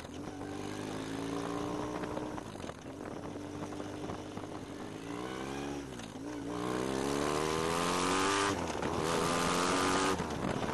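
Motorcycle engine accelerating under load: its pitch climbs slowly, dips and recovers near six seconds, then climbs again, breaking briefly for an upshift about eight and a half seconds in before pulling on. Wind noise grows louder over the second half.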